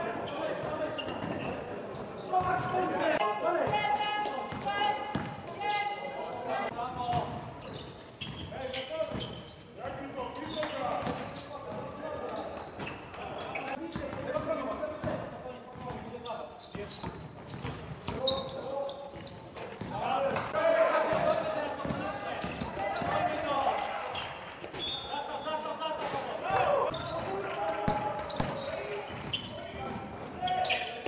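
Live sound of an indoor basketball game: a basketball bouncing on the court floor amid short knocks and impacts, with players' voices calling out in a large sports hall.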